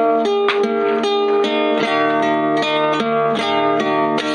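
Music: an instrumental passage of a song, with plucked string instruments over sustained held chords.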